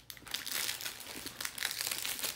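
Small clear plastic bags of diamond-painting drills crinkling as they are handled and sorted through, a run of quick, irregular crackles.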